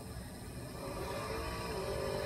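Faint drag-race car engines far down the strip, heard through the speaker of a screen playing the broadcast, with a faint steady tone coming in about a second and a half in.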